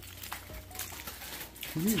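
Faint crunching and chewing of a crispy hard taco shell being bitten into, close to the microphone, with a short laugh near the end.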